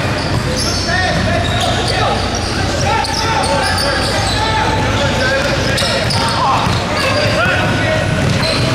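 Indoor basketball game: the ball bouncing on the hardwood floor and sneakers squeaking in short, gliding squeals, with voices of players and onlookers, all echoing in a large gym hall.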